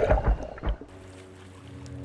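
Water churning and splashing around an underwater camera in short gusts, stopping under a second in; soft sustained music then fades in.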